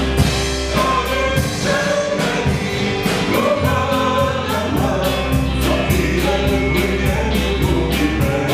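A small band playing live: a woman singing into a microphone over electric guitar, keyboard and a drum kit keeping a steady cymbal beat.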